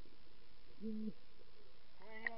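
Steady underwater hiss, with one short, flat, muffled hum from a snorkeller's voice just before the middle.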